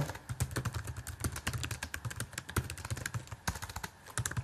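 Typing on a computer keyboard: a quick, uneven run of key clicks, about six a second.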